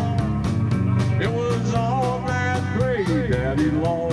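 Live country-rock band music: a hollow-body electric guitar over steady bass notes and a quick, even beat, with a melody line that bends up and down through the middle.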